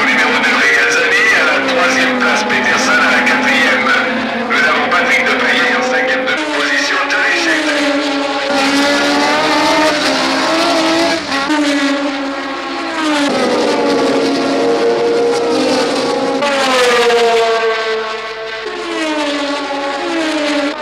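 1970s Formula One race car engines at high revs, several cars together. Their engine notes drop sharply in pitch several times.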